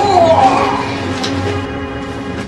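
A person's drawn-out cry, falling in pitch, like a wail of dismay, over background music with steady held notes.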